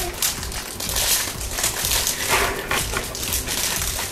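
Foil blind-box bags crinkling and tearing as they are handled and opened by hand, in irregular crackles.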